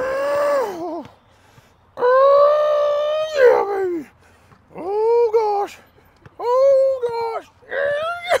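A man's long, drawn-out straining groans, four in a row, each held and then falling away in pitch, as he hangs and strains on a pull-up bar.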